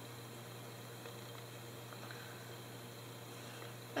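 Faint room tone: a low steady hum with light hiss and no distinct sounds.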